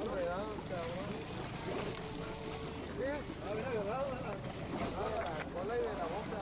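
People's voices on deck over the steady low drone of a boat's engine.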